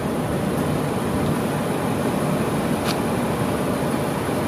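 Steady outdoor background noise with a low rumble, and one faint click about three seconds in.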